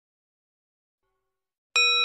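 A single bell ding sound effect, struck suddenly near the end and ringing on with several clear tones as it fades, marking the notification bell being switched on.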